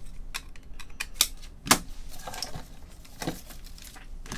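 Irregular light clicks and taps of trading cards and hard plastic card holders being handled on a table, the two sharpest just after a second in and shortly before the midpoint.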